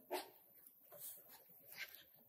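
Near silence: room tone with three faint, brief sounds spaced about a second apart.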